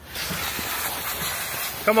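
Garden hose spray nozzle spraying water onto a puppy's coat and a wooden deck: a steady hiss.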